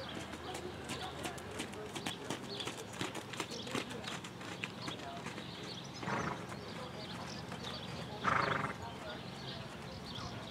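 Horse hoofbeats: a run of sharp, uneven knocks over the first four seconds. Two short calls follow, about six and eight seconds in, the second the loudest.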